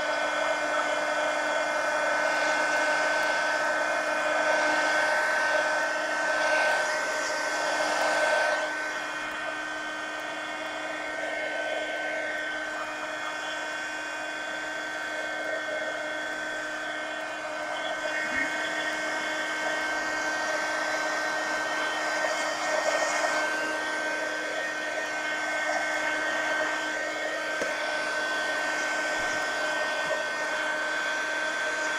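Handheld electric hot-air dryer running steadily with a fan whine, drying wet paint on a pumpkin. The air rush dips a little partway through as the dryer is moved around.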